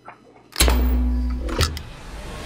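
Film trailer soundtrack starting: after a near-quiet moment, music with a deep, heavy bass comes in suddenly about half a second in and holds steady.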